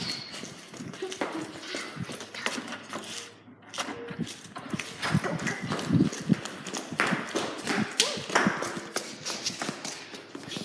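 Irregular taps and knocks at an uneven pace, with faint voices in the background.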